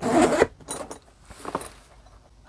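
Zipper on a Veto Pro Pac Tech Pac Wheeler tool bag being pulled open around the front panel. There is a loud zip in the first half-second, followed by fainter, broken zipping.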